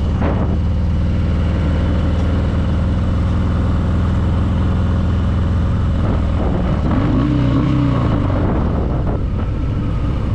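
2020 Harley-Davidson Fat Boy's V-twin, built up to 117 cubic inches with a Screamin' Eagle Stage 4 kit, running at low cruising speed with a steady, deep note. About seven seconds in, the engine note briefly rises and falls as the throttle is opened and eased off.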